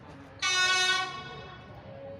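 A train horn sounds one short toot about half a second in, lasting just over half a second before fading.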